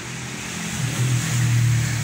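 A low motor hum over a steady hiss, growing louder about halfway through.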